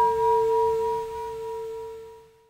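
A single struck chime tone ringing on and slowly fading away: one clear pitch with a fainter overtone an octave above, like a tuning fork or singing bowl, used as an edited-in sound effect.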